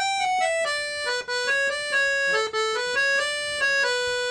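Ottavianelli piano accordion, treble keyboard alone, playing a single-line Irish jig melody in E Dorian one sustained reed note at a time. The melody moves mostly stepwise and slowly descends.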